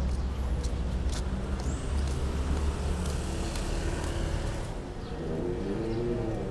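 Road traffic at the roadside: a motor vehicle's engine rumbling low as it passes, easing off about halfway through, with faint voices near the end.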